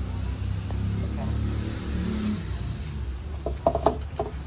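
A few sharp taps and knocks near the end as a MacBook Air box and its cardboard packaging are handled, over a steady low rumble.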